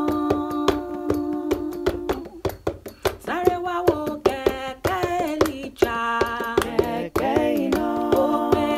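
A woman singing a cappella in several layered parts of her own voice in close harmony, holding long notes that change together. Steady hand claps keep the beat under the singing.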